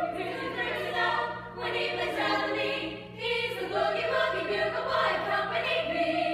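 Women's choir singing a boogie-woogie number in several-part harmony, in phrases with short breaks about a second and a half and three seconds in.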